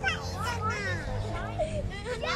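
Small children chattering and calling out in high voices, over a low steady rumble.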